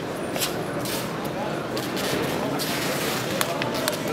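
Indistinct chatter of many voices in a large hall, with a few short sharp clicks and knocks near the end.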